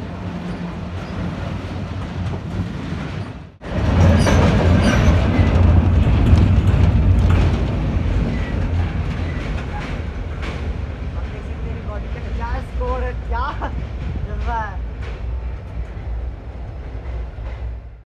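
Railway freight wagons rolling over the track right above the microphone, a steady heavy rumble with wheels clattering over the rails. The sound breaks off for a moment a little after three seconds in, comes back louder, and then slowly dies away.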